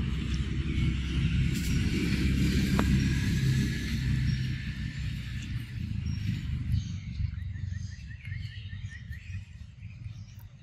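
A low rumble, loudest in the first few seconds and fading away after about six seconds, under birds calling in the forest. Near the end there is a quick run of short, evenly spaced chirps.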